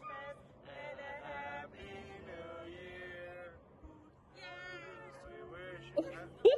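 Faint singing voice holding long notes that glide up and down, with short gaps between phrases.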